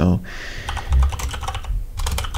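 Typing on a computer keyboard: a quick run of keystroke clicks, pausing briefly near the end.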